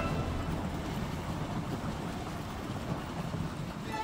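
Dog sled moving along a packed snow trail behind its running team: a steady rumbling hiss of the runners sliding over the snow.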